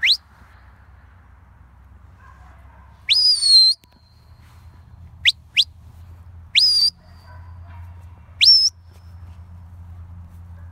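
A shepherd's whistle commands to a working sheepdog: a series of short, sharp, rising whistles. A longer one comes about three seconds in, a quick pair a little after five seconds, and single ones near seven and eight and a half seconds in.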